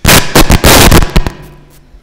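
A table microphone being handled and moved on its stand: loud crackling and knocking in the mic for about a second and a half, then dying away.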